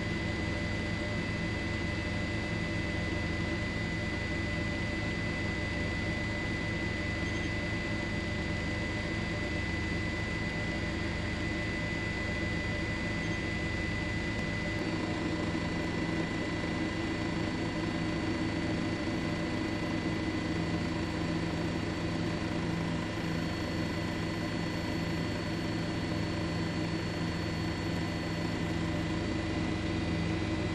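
Steady drone of a helicopter's engine and rotor with a thin, steady high whine over it; the mix of tones shifts slightly about halfway through.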